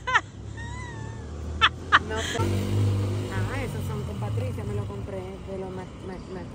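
A vehicle engine running with a low, steady hum that grows louder about two seconds in and fades again near the end.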